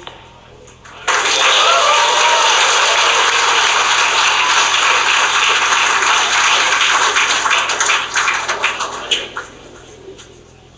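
A crowd cheering and applauding loudly, starting suddenly about a second in and fading near the end, in response to the confirmed stage separation of the Falcon 9.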